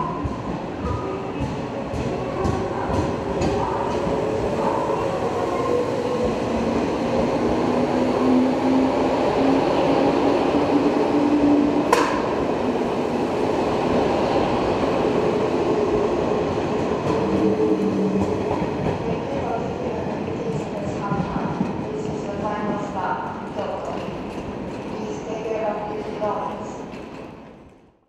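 JR 381 series electric limited express pulling out of the station: a motor tone rises in pitch as it accelerates, with rumbling wheels and a sharp click about halfway through. It grows louder as the cars pass, then eases off as the last car leaves.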